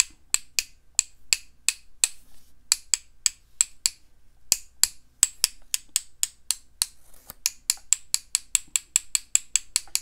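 A paintbrush loaded with watered-down white gouache tapped again and again against the handle of a second brush, making a sharp click about three or four times a second with a short pause a few seconds in. Each tap flicks splatter spots onto the watercolour paper.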